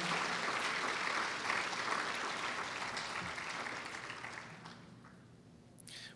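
Audience applause, dying away gradually over about five seconds to near silence.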